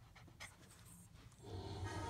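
Quiet, with a few faint soft puffs, then about a second and a half in, a music sting with a low steady bass note starts playing through the television's speaker.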